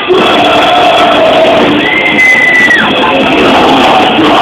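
Rock band playing live, loud and distorted. Near the middle a single high note is held for about a second, then slides down and drops out.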